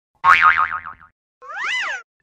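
Cartoon sound effects. First comes a loud boing whose pitch wobbles rapidly and sinks as it fades over about a second. Then comes a pitched tone that rises and falls once.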